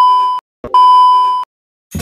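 Television test-pattern tone sounding over colour bars: a steady, high beep that cuts off shortly after the start, then a second beep of about three-quarters of a second. Music starts right at the end.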